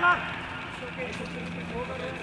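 Players' voices calling faintly and sporadically across an open field, after a brief burst of overlapping shouts right at the start, over a faint steady low hum.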